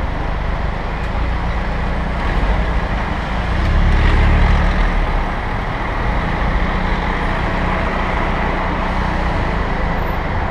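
City road traffic heard from a moving bicycle: car engines and tyre noise close by, with wind rumble on the microphone. It grows louder for about a second around four seconds in.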